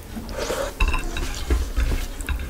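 Close-miked eating sounds: chewing a mouthful of rice and chicken curry eaten by hand, and fingers squishing rice into curry on a plate, with a few sharp clicks.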